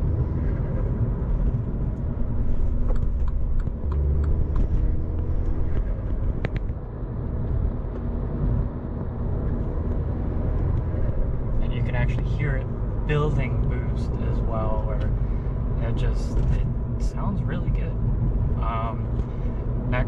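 Mini Cooper S turbocharged 2.0-litre four-cylinder engine heard from inside the cabin while driving, breathing through an aFe Power Magnum FORCE Stage-2 cold air intake with no cover fitted. It runs as a steady drone with road noise, and gets louder about two to five seconds in.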